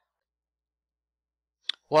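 Near silence, then a single short sharp click near the end, just before a voice starts speaking.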